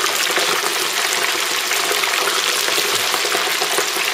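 Chicken wings deep-frying in oil heated to about 350°F in a cast-iron pot, a steady, dense crackling sizzle of bubbling oil.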